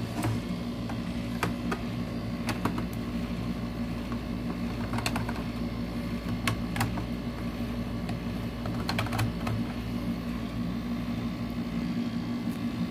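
Scattered light clicks and taps as the hard plastic instrument-cluster housing and a screwdriver are handled, over a steady low hum.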